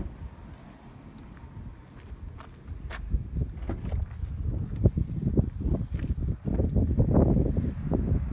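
Footsteps on dry dirt and gravel, with a short sharp knock at the very start. Near the end come louder thuds and rustling as the rear cargo door of the 2014 Toyota Land Cruiser is opened.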